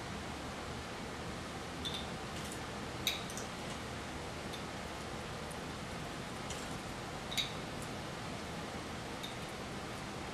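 Quiet steady hiss with a few faint light clicks and ticks spread through, as green crème de menthe is poured from a bottle with a pour spout into a jigger held over a metal shaker tin of ice.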